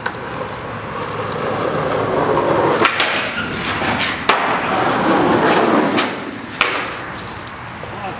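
Skateboard wheels rolling on asphalt, getting louder as the board approaches. Sharp clacks follow about three and four seconds in as the board pops and hits a concrete curb, then it rolls on, with another clack a little over six seconds in.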